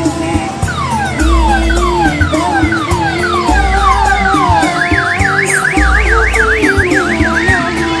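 An odong-odong mini train's electronic siren sounding over loud music with heavy bass: first a run of falling whoops about two a second, then, about five seconds in, a fast up-and-down warble.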